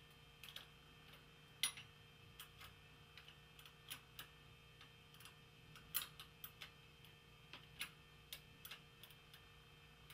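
Faint, irregular metallic clicks and ticks of a small wrench working the cable anchor bolt on a Shimano Acera rear derailleur as the shift cable is clamped tight.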